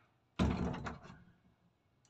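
A door is pushed open with one sudden loud bang about half a second in, dying away over about a second.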